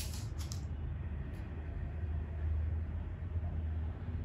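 A steady low rumble of background noise, with a faint even hiss above it and a few soft clicks near the start.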